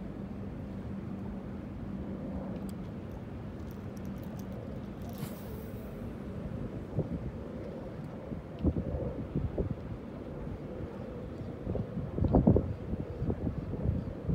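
Wind buffeting the microphone over a steady low background rumble. The gusts grow stronger and more uneven in the second half and are loudest near the end.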